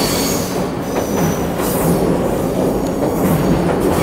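Electric train passing on the elevated tracks overhead, a loud steady rumble of wheels on rail: a tremendous noise.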